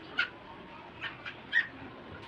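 A few short, sharp animal calls, three clear ones and a fainter one, spread over about a second and a half.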